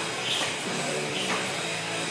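Background rock music playing.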